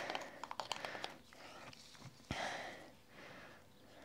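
Faint handling sounds of a metal spoon scooping powdered acid dye out of a small glass jar: a few small clicks, then a sharper click a little over two seconds in followed by a soft rustle.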